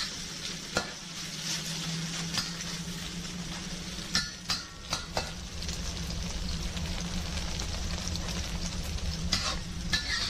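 Sliced beef sizzling in hot oil in a wok over high heat, searing while a spatula stirs and scrapes it, with a few sharp clicks of the spatula against the wok.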